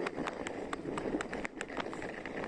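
Skis sliding down a snow slope: a steady scraping rush of the ski bases on snow, broken by rapid, irregular clicks and knocks, several a second.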